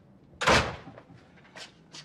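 A door banging once about half a second in, then two faint knocks near the end.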